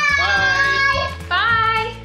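Background music: a song with a high-pitched sung voice holding long, sliding notes over a steady bass line.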